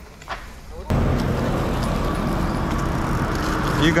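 Steady rushing wind noise on an action camera's microphone, cutting in suddenly about a second in.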